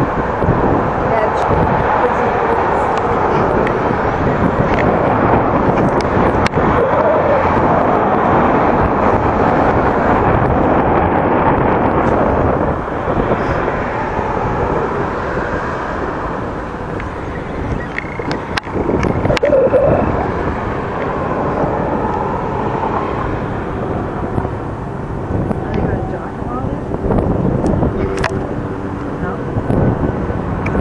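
Steady outdoor noise: the drone of a motorboat's engine passing at a distance, mixed with background voices.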